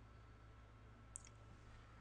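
Near silence: room tone with a low steady hum, broken by one faint, brief click about a second in.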